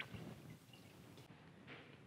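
Near silence: room tone, with one faint click at the start.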